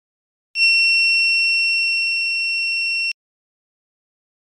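Small electronic buzzer on a water-tank overflow alarm circuit sounding one steady, high-pitched beep of about two and a half seconds that starts and stops abruptly. The alarm is triggered because the probe wires are in water, the sign that the water has reached the overflow level.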